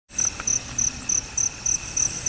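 Night insects chirping in a steady rhythm, about three and a half high-pitched chirps a second, over a continuous high insect drone.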